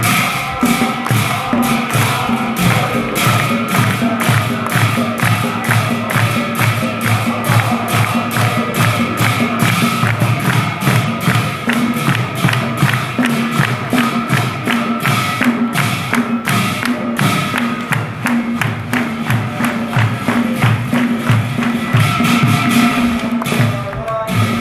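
Assamese nam-prasanga devotional music: small hand cymbals (taal) and a khol barrel drum keep a steady beat of about three strikes a second under a group of men chanting.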